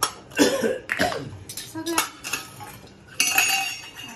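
Small stainless steel plates knocking and scraping on a hard floor, with several separate clanks and a ringing metallic clatter a little after three seconds in.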